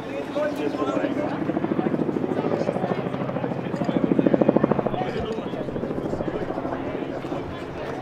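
Helicopter rotor chopping steadily overhead, swelling louder about four seconds in.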